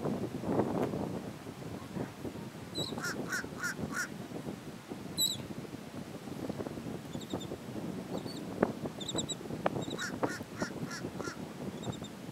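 A crow cawing: a quick run of about four short calls around three seconds in and another run near the end, over steady wind noise on the microphone.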